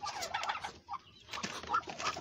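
A few short, soft calls from a brooding Muscovy duck disturbed on its nest as a hand reaches in under the covering blanket, with the blanket rustling.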